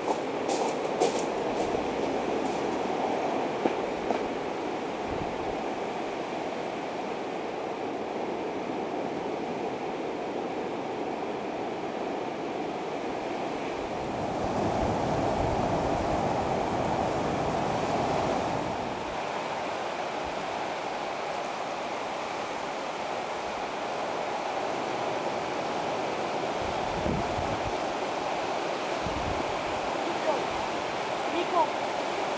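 Steady rushing outdoor noise, a little louder for a few seconds in the middle.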